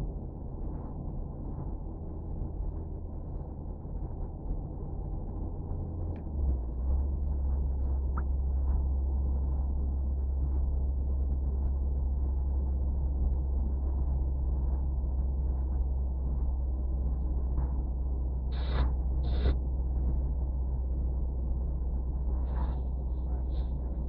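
Steady low drone of a car's engine and tyres heard from inside the moving car, getting louder and settling slightly lower in pitch about six seconds in. Two short, higher sounds come near the end.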